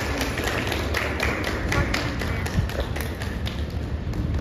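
Rhythmic hand clapping, about four claps a second, keeping time for a dance, with voices faintly in the background.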